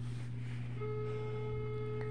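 A steady low electrical buzz on the recording of an old tablet. From about a second in, a single flat, held tone with overtones sounds over it for more than a second.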